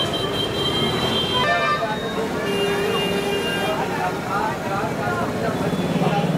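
Busy street ambience of voices and traffic, with vehicle horns sounding: a held horn tone at the start, a short toot at about a second and a half, and another horn in the middle.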